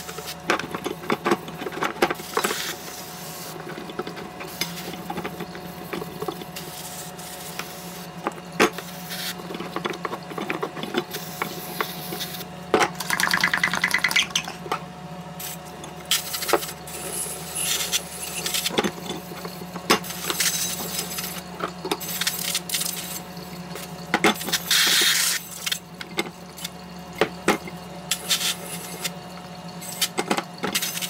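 Aluminium scoop coater knocking and clinking against the washout sink as it is handled and scrubbed with a gloved hand during emulsion cleanup. Two short hisses of water spray come from a pump sprayer, one near the middle and one later on.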